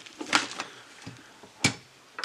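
Two short clicks about a second apart as the box magazine is pulled out of an airsoft M249's magazine well.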